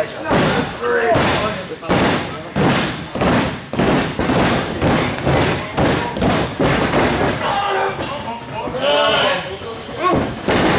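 Repeated thuds on a wrestling ring's canvas, about one to two a second, echoing in the hall as wrestlers grapple.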